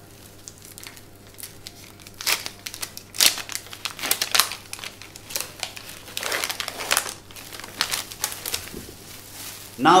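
A sterile wound-dressing packet being torn and peeled open by hand: irregular crinkling and crackling of the wrapper, with several louder crackles.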